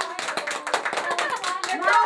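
Children clapping their hands in a quick, irregular run of claps, with voices calling and chattering over it.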